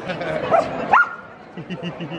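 A dog giving two short, rising yips, about half a second and a second in, amid laughter and voices.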